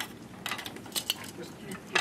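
Scattered light clicks and clinks, a few a second, over low room noise.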